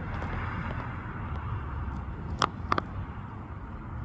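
Steady low outdoor rumble, with two sharp clicks a fraction of a second apart about two and a half seconds in.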